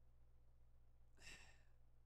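Near silence with a steady low hum, and one faint breath into the microphone a little past a second in.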